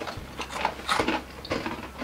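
Mouth crunching hard, crunchy pretzel pieces: a handful of short, irregular crunches.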